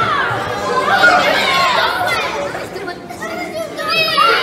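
A crowd of children chattering and calling out at once in a large hall, many high voices overlapping, dipping briefly a little past halfway before picking up again.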